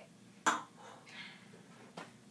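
A stemmed glass set down on the table with one sharp click about half a second in, followed by a soft breathy sound.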